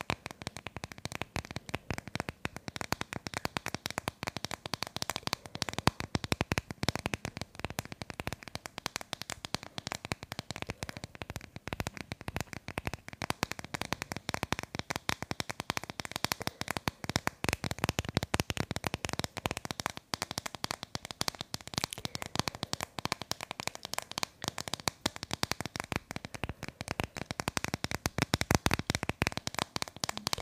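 Long fingernails tapping rapidly on a plastic phone case held right at the microphone, making a dense, continuous run of quick clicks.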